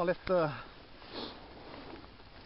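A man laughing in two short vocal bursts with falling pitch, followed about a second in by a short breathy hiss over a quiet background.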